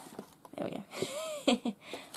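Rustling and light knocks as a knitted toy is pressed into a cardboard-and-paper suitcase, with a short hum that rises and falls about a second in. A couple of sharp knocks come about a second and a half in.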